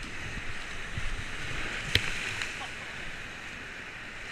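Rushing, churning whitewater of a river rapid against the side of an inflatable raft, with splashing and low buffeting on the microphone. A single sharp knock about halfway through.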